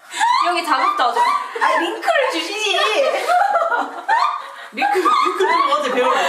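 People chatting back and forth with chuckling and laughter.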